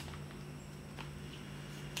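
Faint handling clicks of a Spigen Slim Armor Pro plastic case on a Galaxy Z Fold 3 as it is turned in the hands: two small taps about a second apart, over a steady low hum.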